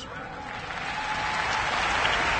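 A large audience applauding a speech line, the clapping swelling steadily louder.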